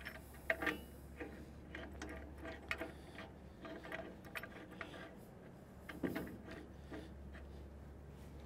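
Faint, irregular metallic clicks and light scrapes of a steel cracker plate and its bolts being shifted and started by hand inside a forage harvester's cutter-head housing, with a duller knock about six seconds in.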